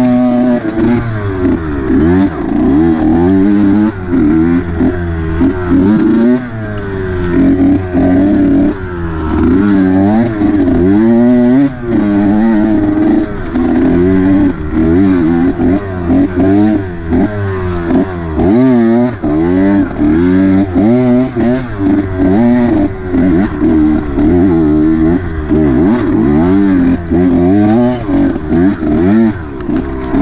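Dirt bike engine being ridden on and off the throttle, its pitch rising and falling over and over every second or two, with short dips in loudness when the throttle closes.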